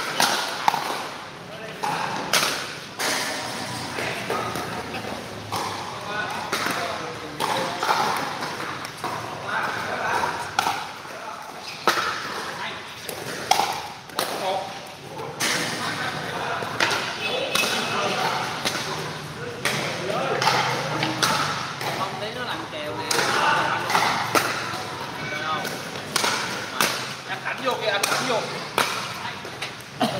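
Pickleball paddles hitting a hard plastic ball during a doubles rally: sharp pops at irregular intervals, some close together in quick exchanges. Voices of players and people nearby talk throughout.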